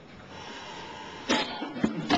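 A short cough into a microphone about a second and a half in, followed by a sharp click.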